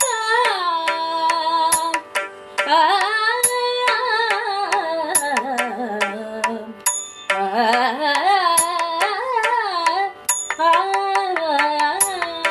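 Carnatic music, a thillana in raga Mohanam set to Adi tala: a melodic line slides through long ornamented phrases over a steady drone, with sharp percussion strokes, breaking off in short pauses between phrases.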